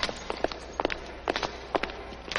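Footsteps of several people walking across a hard floor: irregular, overlapping clicks of steps over a faint low hum.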